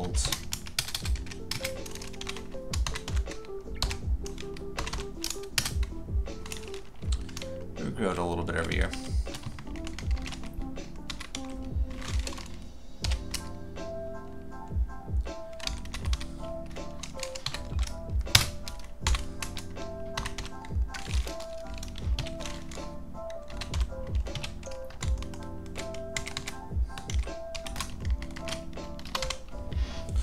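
Typing on a computer keyboard in quick, uneven runs of keystrokes, over steady background music.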